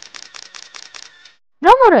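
Rapid, evenly spaced clicking sound effect, about seven clicks a second, over a faint steady tone, under an animated logo transition. It stops a little past a second in, and a narrator's voice begins near the end.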